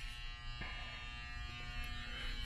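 A steady electrical buzz made of several fixed tones, holding level under faint room sound.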